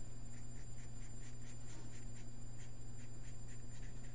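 Sharpie permanent marker scratching on paper in rapid back-and-forth hatching strokes, about four or five a second, laying dark shading on a drawing. A steady low hum runs underneath.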